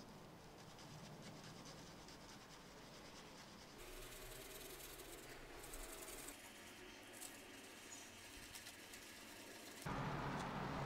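Faint rustling and scratching of tissue paper under gloved hands as a palladium piece is rubbed onto nickel mesh wrapped inside it.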